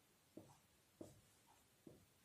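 Faint strokes of a marker writing on a whiteboard: three short strokes, less than a second apart.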